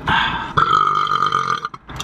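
A man belching after gulping fizzy root beer: one long, loud burp lasting about a second and a half that breaks off abruptly.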